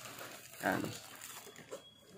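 Faint crinkling of a small plastic parts bag being handled, with one short spoken word about half a second in.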